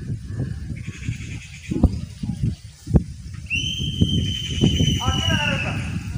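A whistle blown in one long, steady, high blast of about two and a half seconds, starting a little past halfway, as the signal for the mass sapling planting to begin. Underneath, wind rumbles on the microphone, with a few thumps.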